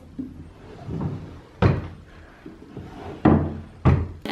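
Wooden dresser drawers being pushed shut by hand, each closing with a thud. One closes about one and a half seconds in, and two more close in quick succession near the end.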